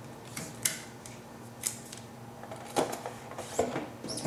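Adhesive tape being pulled off the roll, torn and pressed down onto glass: a handful of short, sharp rips and taps spread over a few seconds.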